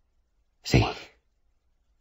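A single short spoken word, "sí", about half a second in; otherwise silence.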